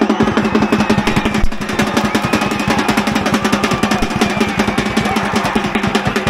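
Football supporters' drums beating in rapid, steady strokes, with crowd voices from the stand over them.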